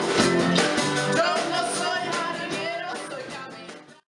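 A small live rock band, with acoustic and electric guitars and a drum kit, playing a song with a woman singing; the music fades away over the last second or so.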